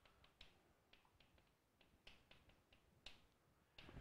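Faint, irregular taps and clicks of chalk on a blackboard while a formula is written, with a slightly louder tick about three seconds in.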